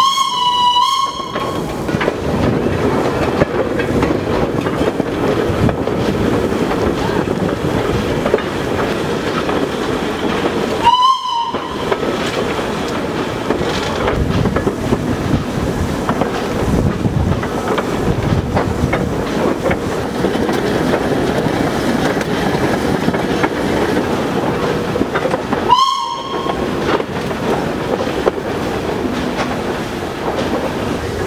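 A 1928 German-built wood-fired steam locomotive running with its train, the wagons clattering steadily over the rails. Its steam whistle gives three short toots: one right at the start, one about a third of the way through, and one near the end.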